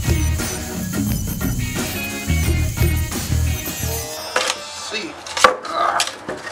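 Background music with a steady beat for about four seconds, then it stops. A few sharp wooden knocks and paper rustling follow as the wooden board is handled and the paper pattern is peeled off it.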